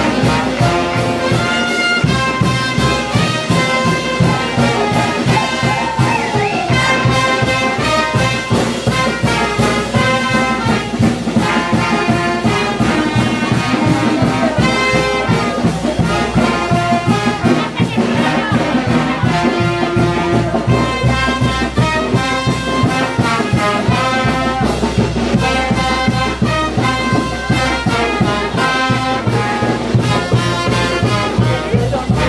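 A brass band playing a lively dance tune with a steady drumbeat, with trumpets and trombones carrying the melody.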